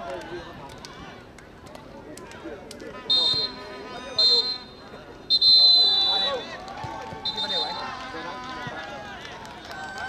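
Four shrill whistle blasts, the longest about a second, sounding over men's voices talking and calling.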